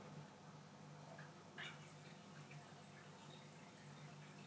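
Near silence: room tone with a faint steady low hum and a few faint soft ticks, one about a second and a half in.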